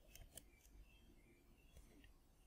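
Near silence, with a few faint computer keyboard key clicks in the first half second.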